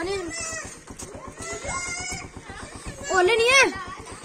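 Short high-pitched vocal calls that rise and fall, without words, the loudest about three seconds in, over the steady low pulse of an idling engine.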